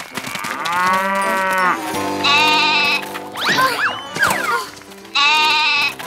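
Cartoon goat bleating, two bright calls about three seconds apart, after a longer, lower drawn-out animal call at the start. Swooping whistle-like glides from the cartoon score sound between the bleats.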